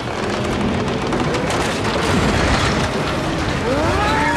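Film soundtrack of landmine explosions: a dense, continuous booming rumble that builds in the first second and then stays loud.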